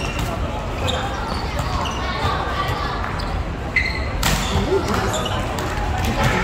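Volleyball rally on an indoor court: a sharp smack of the ball being hit about four seconds in, with a few short squeaks, over players' voices in a large echoing gym.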